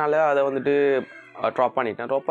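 A man speaking close to a clip-on microphone, in two phrases with a short pause about a second in.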